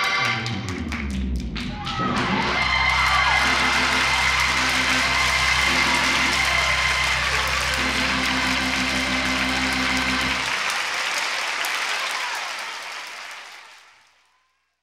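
The music ends and an audience claps and cheers, over a low held chord that stops about ten seconds in. The applause then fades out.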